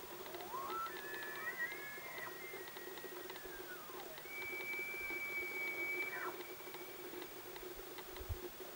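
Bull elk bugling: a whistle that climbs, holds high for a couple of seconds and slides back down, then a second long high whistle held for about three seconds. Faint scattered clicks and a steady low hum run underneath.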